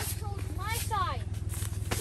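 Children's high-pitched, sliding voices over a steady low hum, with a couple of short rustles of tent fabric.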